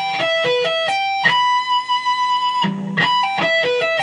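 Electric guitar sweep-picking an E minor arpeggio across the top three strings, with a pull-off on the high E string from the 19th fret to the 15th. The run is played twice, each time ending on a high note held for about a second.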